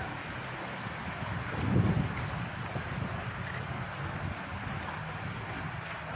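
Wind blowing across a phone microphone outdoors: a steady hiss, with a stronger low gust buffeting the microphone about two seconds in.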